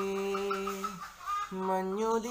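A man singing solo, holding a long note with quick warbling ornaments. The note breaks off about a second in, and the next sung note starts about half a second later.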